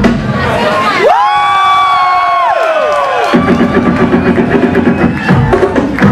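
Battle DJ's turntable routine over a hip-hop beat. About a second in the beat drops out, leaving a held sampled tone that glides up, holds, then falls in pitch and fades as the record is slowed to a stop. The beat comes back in just after the three-second mark.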